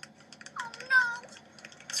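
Cartoon audio chopped into a rapid stutter of short clicks, with a brief high voice that slides up and then down about half a second to a second in.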